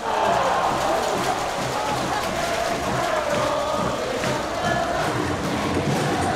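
Baseball stadium crowd singing and chanting along to a loud cheer song with a steady beat.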